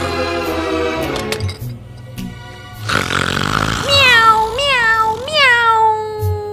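Film score music, then from about four seconds in a long, loud meow that rises in pitch three times before gliding down.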